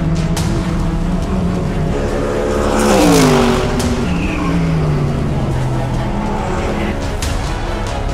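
A Mercedes-AMG GT3 race car's V8 engine passes by at speed about three seconds in, its note dropping sharply in pitch as it goes past, with background music.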